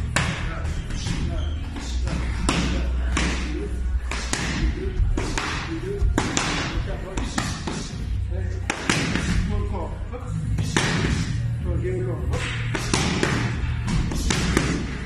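Boxing gloves striking focus mitts: sharp slaps landing in quick combinations of two or three, with short pauses between, over background music with a steady bass.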